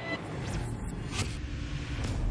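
Cinematic logo-sting sound effect: a low rumble that swells up out of silence, with a swoosh about half a second in and another just past a second.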